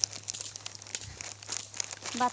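Plastic snack packet crinkling in a child's hands close to the microphone, a rapid, irregular string of small crackles.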